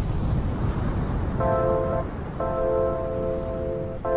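Surf washing up over a sandy beach, a low, even rush. Background music with held chords comes in about a second and a half in, breaks off briefly, then continues.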